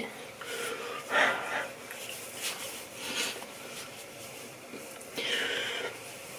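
A woman's quiet breathing through the nose: a few short, soft exhales, with a longer breathy one near the end.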